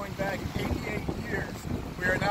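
Wind buffeting the microphone in a steady low rumble, under a man's speech.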